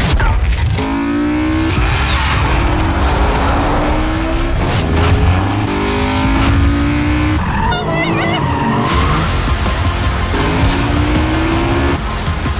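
Modified BMW M4's twin-turbo straight-six with a straight-piped titanium exhaust, revving hard in about four rising pulls that each climb in pitch and break off, with tyre squeal.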